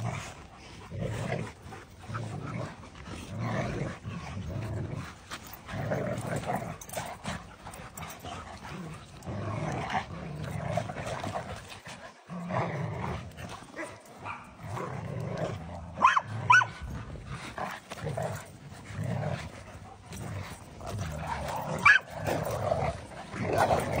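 Several dogs growling in play while tugging together on one toy, a near-continuous pulsing rumble, with a couple of sharp yips about two-thirds of the way in and another near the end.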